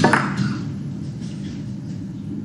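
Sharp click of snooker balls near the start, as the cue ball is struck and knocks into a nearby red. A low, steady hall murmur follows.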